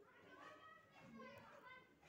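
Faint, distant voices in the background, children's voices among them, with no one speaking close by.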